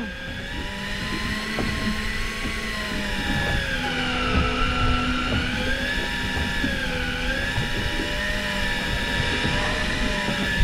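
Electric fishing reel winding line in under heavy load, a steady motor whine whose pitch sags and recovers as a hooked fish pulls against it on the bent rod.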